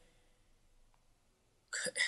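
Near silence: a pause in a conversation, with a man's voice starting to speak near the end.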